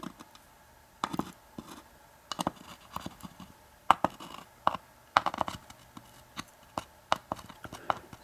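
Irregular light clicks and scrapes of metal tweezers and small brass lock pins being handled and set down in the slots of a wooden pin tray.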